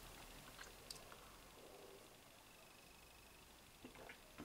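Near silence: faint sounds of a man sipping and swallowing beer from a glass, with a few soft clicks in the first second or so.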